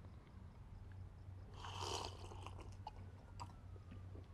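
A woman sipping a drink from a glass, with one brief slurping swallow about halfway through, a few faint clicks, and a low steady room hum.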